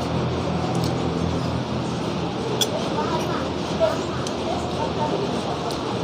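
Spoon and fork clinking a few times against a plate while eating, over faint voices in the background.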